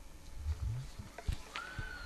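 Low gamelan drum (kendang) strokes, one of them sliding upward in pitch, followed near the end by a short high held note as the ketoprak accompaniment starts up.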